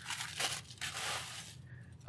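Plastic poly shipping mailer crinkling as it is crumpled by hand, once briefly about half a second in and then for longer in the middle.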